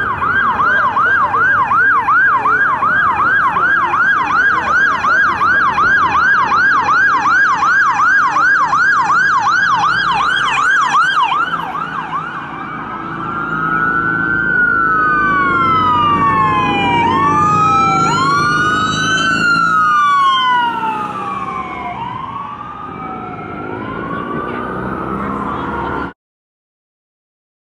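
Electronic sirens of a police car and an ambulance on an emergency run, over low traffic rumble. First a fast yelp, about three sweeps a second, for roughly eleven seconds. Then slower rising-and-falling wails, with two sirens overlapping as the vehicles pass.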